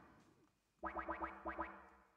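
Software synthesizer in a Bespoke Synth patch playing short repeated notes at one pitch, about four a second. The notes start a little under a second in and each one fades quickly.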